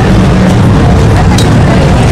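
Loud, steady low rumble of city street noise, with faint voices of passers-by.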